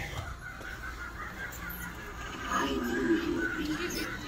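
The Lord Raven plague-doctor raven animatronic, just set off by its foot pad, playing its soundtrack: not very loud. Another animatronic's laughter is heard in the background, getting louder about two and a half seconds in.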